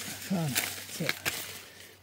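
A man's two short murmured vocal sounds, with a couple of sharp clicks and rustles from handling maize plants and a green ear of corn.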